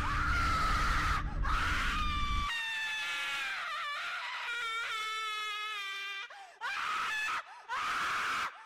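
High-pitched wailing, screaming voice. A long wavering cry over a low rumble that stops about two and a half seconds in, then a lower moaning wail, then shorter separate cries near the end.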